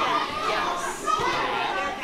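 Indistinct chatter and calls of several children's voices, echoing in a large room.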